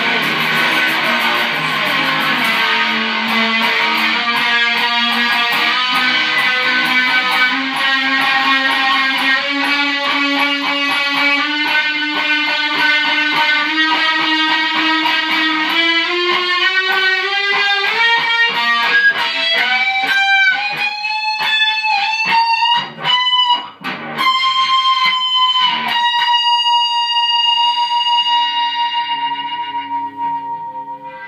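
Distorted electric guitar, a Fender Stratocaster with a DiMarzio BC-1 bridge pickup played through a 1984 ProCo RAT into a 1975 Fender Vibro Champ, picking fast repeated notes that climb steadily in pitch for about twenty seconds. After a couple of brief breaks, one high note is held and rings on to the end.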